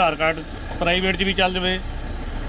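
A man speaking over the low, steady rumble of a running bus engine, heard from inside the bus.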